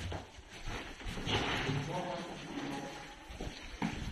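Faint background voices and the footsteps of a few people walking along a hallway, with a short knock near the end.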